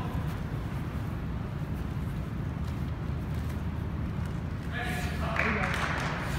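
Steady low rumble of room noise on turf, with faint voices just before the end and a short hiss-like scuff near the end.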